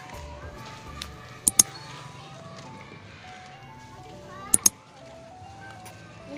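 A simple tune of single held notes plays steadily, like a street vendor's jingle. Two quick double clicks with a high ring cut in, about a second and a half in and again near the end.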